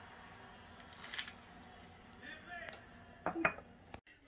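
Faint rustling and pattering of Heath toffee bits being poured into a plastic mixing bowl, with a short crinkly burst about a second in.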